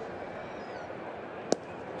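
Steady ballpark crowd murmur with one sharp pop about a second and a half in: the pitch smacking into the catcher's mitt for strike three.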